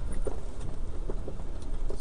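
Jeep engine and drivetrain running as it drives slowly over a rough dirt trail, heard from inside the cab: a steady low rumble with a few short, irregular clunks from the bumpy ground.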